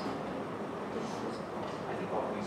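Steady room noise in a lecture hall, with a low hum and faint, indistinct background chatter of people talking.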